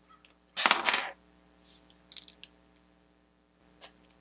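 A small plastic Crazy Bones figure tossed and landing, a short quick run of clicks as it hits and bounces, followed by a few faint light clicks as it settles and is handled.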